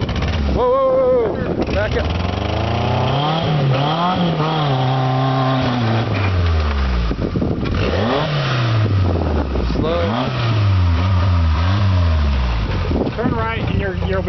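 Small four-cylinder engine of a lifted Suzuki Samurai working under load as it crawls over a steep dirt ledge, revving up and dropping back several times as the driver blips the throttle.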